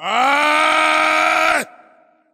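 A man's long, loud vocal cry into a microphone: one held vowel with no words that rises in pitch at the start, holds steady for about a second and a half, then cuts off.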